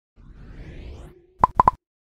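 Animated logo sound effect: a rising whoosh, then three quick pops in close succession about a second and a half in, the pops being the loudest.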